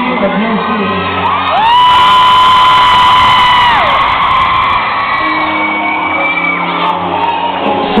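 Live piano playing with a crowd, and an audience member close to the microphone lets out one long, high-pitched scream about a second and a half in that holds for about two seconds, louder than the music.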